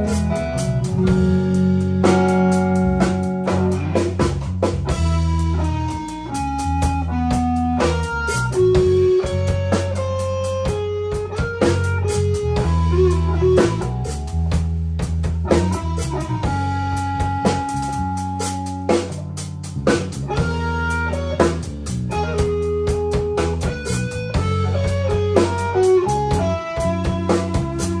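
Live band playing a slow blues-style instrumental passage: electric guitar picking single-note lead lines with bent notes over bass guitar and a drum kit.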